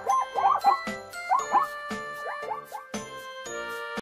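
Zebra calling, a run of short yelps that each rise and fall in pitch, in clusters that thin out toward the end, over jingly children's background music with ringing chime tones.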